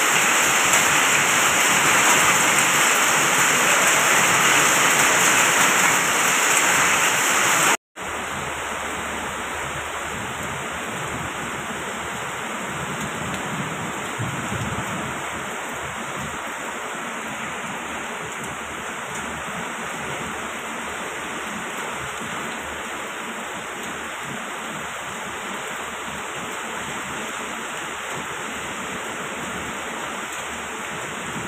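Heavy rain mixed with hail pouring down, a steady, dense hiss. About eight seconds in it cuts out for an instant and comes back quieter and duller.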